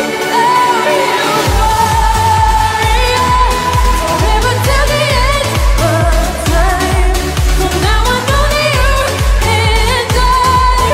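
A woman singing a dance-pop song over synths. A steady kick-drum and bass beat of about two strokes a second comes in about a second and a half in.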